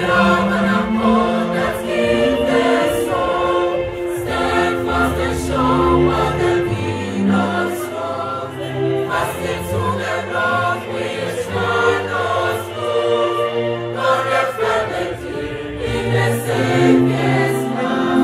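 Mixed choir singing in several parts, with long held chords and short breaks between phrases.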